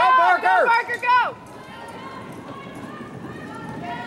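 A spectator shouting a quick string of short calls ("Turn!") for about the first second. Then a quieter stretch of faint background voices and the soft hoofbeats of horses galloping on an arena's dirt footing.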